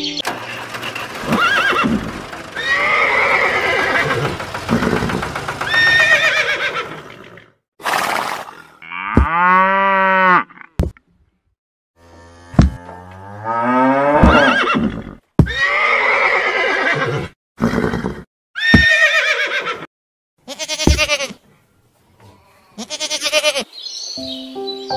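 A run of recorded farm-animal calls, about eight separate calls from different animals played one after another with short silent gaps between them.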